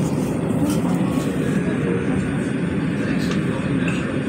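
Steady low rumble of an LA Metro train running, heard from inside the passenger car.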